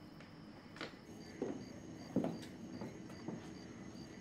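Faint night-time ambience: an insect, taken here for a cricket, chirping steadily at about three chirps a second over a thin high drone, with a few soft knocks.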